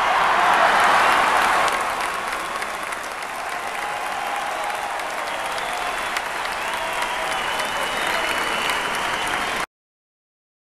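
Arena crowd applauding, loudest in the first two seconds and then steady, with some voices over the clapping; it cuts off suddenly near the end.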